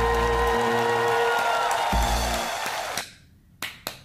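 The last held chord of a live band performance rings out and stops about three seconds in. Then one person starts clapping, with sharp separate claps about four or five a second.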